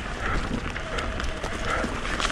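Mountain bike rolling downhill on a dry dirt trail: tyres crunching over dirt and pine needles, with a low rumble and scattered clicks and rattles from the bike over bumps.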